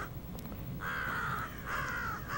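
Crow cawing twice, harsh calls about half a second long, the first about a second in and the second near the end.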